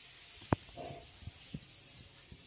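Marker pen tapping and drawing on paper: one sharp tap about half a second in, a fainter one about a second later, and soft low knocks between them.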